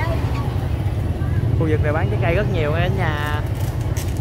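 Busy outdoor market ambience: a steady low rumble with people talking nearby, the voices clearest in the middle of the stretch.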